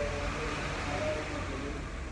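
Steady low rumble of room noise with faint, indistinct voices in the background.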